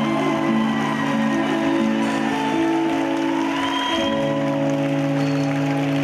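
Live band music with long sustained chords, the harmony changing about four seconds in, with audience applause mixed in.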